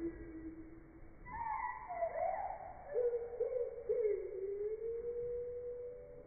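Zwartbles ewes bleating, slowed down in slow-motion playback so the calls come out deep, drawn-out and wavering, like whale song. Several calls overlap: one slides down in pitch a little over a second in, then lower wavering calls follow through the second half.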